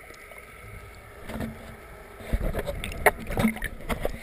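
Pool water sloshing around a waterproof camera housing held at the surface, muffled. About two seconds in it grows louder, with irregular knocks and small splashes as a hand grabs the camera.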